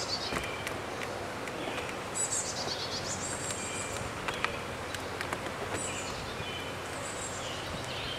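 Songbirds singing in the surrounding woods over a steady low hum of honeybees around the open hive, with a few light clicks as wooden hive frames are worked loose and lifted.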